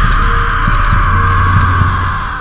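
Spooky intro soundtrack: a loud, steady hissing whoosh over a low hum with a pulsing, heartbeat-like low beat.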